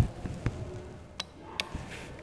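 A few faint, sharp clicks and taps of fingers pushing a wire lead into a solderless breadboard.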